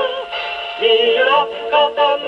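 A 1942 Japanese song with singing and orchestra playing from a 78 rpm shellac record on a Columbia G-241 portable wind-up gramophone. The sound is thin, with little treble. A held sung note ends just after the start, and a new phrase begins about a second in.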